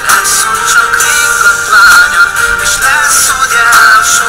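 A pop song with a lead vocal over a backing track, the sung line wavering up and down; the sound sits high and thin with very little bass.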